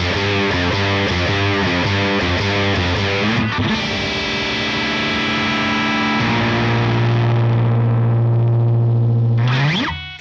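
Heavily distorted electric guitar through a Line 6 Helix amp-modelling preset, with a grainy tone. It plays a rhythmic chugging riff, then rings out sustained chords. From about six seconds in it holds a long low note, which ends in a quick upward slide and cuts off near the end.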